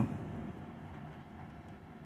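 Faint, steady low background rumble with no distinct events.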